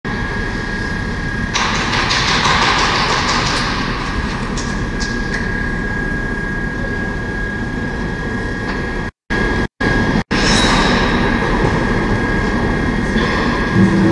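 Steady low rumble of an indoor ice arena's hall noise with a thin steady high tone, a hissy burst of noise a couple of seconds in, and three brief cut-outs to silence a little past the middle. Music starts right at the end.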